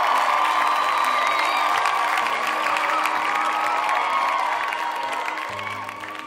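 A crowd cheering, whooping and applauding, with music playing underneath; the cheering fades out near the end.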